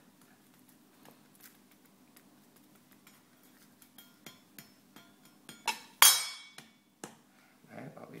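Chef's knife cutting through a red onion onto a wooden chopping board: scattered light knocks, then two louder sharp knocks with a brief metallic ring about six seconds in.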